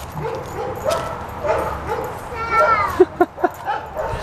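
A dog giving a run of short yips, then a falling whine about halfway through.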